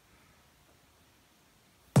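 Near silence with faint room tone, cut off right at the end by a sudden loud onset.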